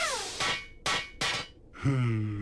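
Cartoon sound effects: a short falling whistle, then three sharp hits less than half a second apart. Near the end a low voice begins.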